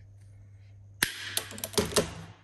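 Pipe shears cutting through plastic push-fit pressure pipe: a sharp snap about a second in, then a quick run of clicks and crunches as the blade closes through the pipe, loudest near the end.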